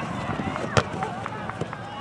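A soccer ball struck once with a sharp thud about 0.8 s in, with lighter knocks and distant voices from the field around it.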